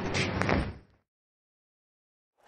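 A short burst of unpitched noise with a single click about half a second in, fading out before one second. It is followed by complete silence.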